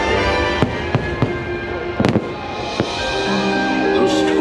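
Aerial fireworks bursting: about five sharp bangs in a row, the loudest a quick double bang about halfway through. The show's music plays underneath.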